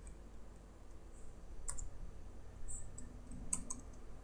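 A few faint computer keyboard keystrokes, scattered and irregular, as template code is typed.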